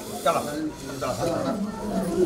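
Indian spectacled cobra hissing: a short breathy hiss near the start, with people's voices murmuring underneath.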